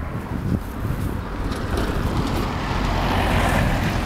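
Traffic noise from a vehicle on the road, growing louder over the second half, over a steady low rumble of wind on the microphone.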